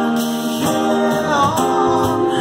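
Live acoustic band playing a song: voices singing long held notes over strummed acoustic guitars, with a brief sliding vocal turn near the end.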